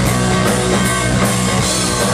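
Live rock band playing loudly: distorted electric guitar, bass guitar and drum kit, with a steady driving beat of about four strokes a second.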